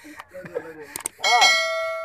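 Subscribe-button notification-bell sound effect: a click, then one bright bell strike about a second and a quarter in that rings on and slowly fades.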